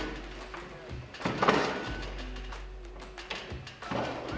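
Quiet background music, with a metallic clunk and scrape about a second and a half in as the Mark 19 grenade launcher's bolt is pushed forward into the receiver, and a couple of lighter knocks.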